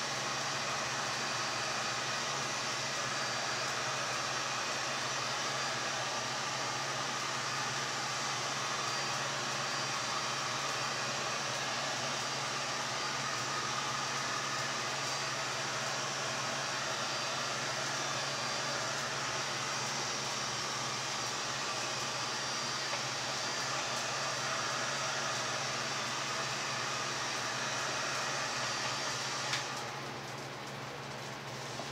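Electric heat gun running steadily, blowing hot air over wet acrylic pour paint on a canvas. It is switched off with a click near the end.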